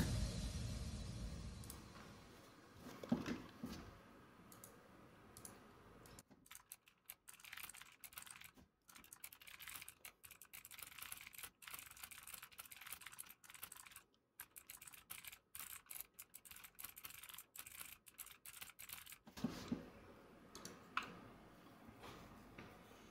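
Faint typing on a computer keyboard: a rapid, irregular run of keystrokes from about six seconds in until about nineteen seconds in.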